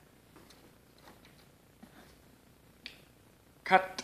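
Faint light clicks and a sharper tick of a pair of wire cutters being handled and set down on a tabletop, followed by a brief spoken sound near the end.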